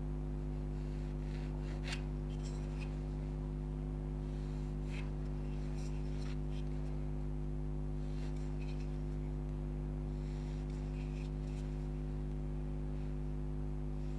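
Short, faint scratches and light taps of a pencil marking guidelines on a carved wooden stick head, heard a few times, over a steady low hum.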